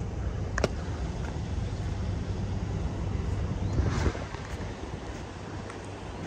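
Kenworth W900L heavy-haul truck's diesel engine idling with a steady low hum, with wind on the microphone. A sharp click comes just over half a second in.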